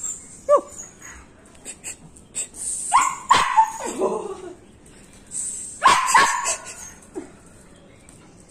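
A dachshund barking and yipping in short separate calls: one high rising yip about half a second in, a run of barks around the middle, and two more barks near the end.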